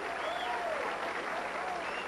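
Audience applauding in a bowling alley, with a few voices calling out over the clapping.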